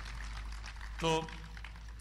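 A pause in a man's speech over a steady background hiss and low hum from an outdoor public-address feed, with one short spoken word about a second in.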